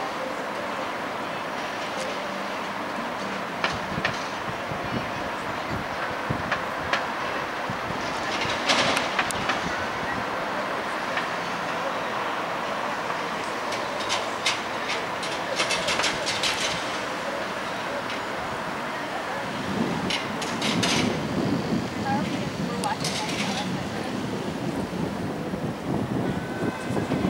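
Steady outdoor city noise, mostly traffic, with distant voices and scattered sharp clicks and taps.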